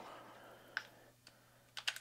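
Faint handling clicks from a cordless mini chainsaw's chain tensioner knob and chain as they are worked by hand: one click before the middle, then a quick run of clicks near the end.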